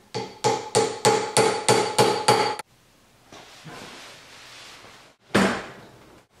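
Ball-peen hammer striking the steel cross and bearing caps of a double cardan U-joint: about eight quick, ringing metal blows at roughly three a second, then one more loud knock near the end.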